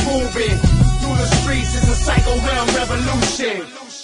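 Hip hop track with rapped vocals over a bass-heavy beat; the music fades out about three and a half seconds in.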